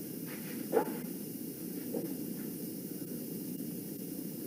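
A short animal call about a second in, with a fainter one near two seconds, over steady low background noise.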